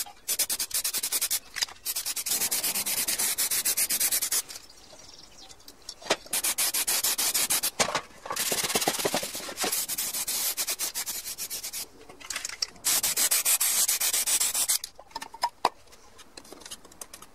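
Aerosol spray paint can hissing in several bursts of one to four seconds, with short gaps between, as engine tinware is sprayed black. The hiss is choppy and fluttering.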